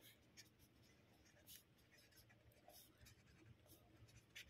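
Faint scratching of a marker pen writing words on paper, in short separate strokes.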